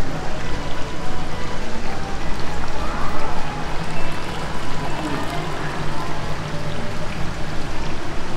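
Water running and splashing in a stingray touch pool, a steady rushing wash, with faint voices of other visitors in the background.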